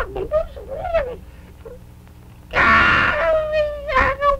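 A puppeteer's voice giving a baby dragon's wordless cries: short babbling sounds at first, then a loud rough squeal about two and a half seconds in that settles into a long, held, wailing honk.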